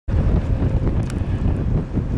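Wind buffeting the camera microphone: a loud, steady, rough low rumble.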